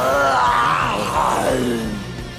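A man's drawn-out yell, its pitch rising and falling, over background music; the voice fades out near the end.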